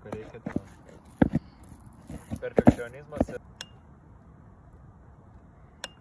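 Metal spoon knocking and scraping in a plastic mixing bowl of flour, several sharp knocks over about three seconds, then a quieter stretch with two short, light clinks of a spoon against a glass bowl.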